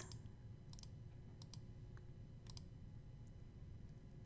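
Faint computer mouse clicks, a few scattered ticks, several in quick pairs like a button being pressed and released, over low room hiss.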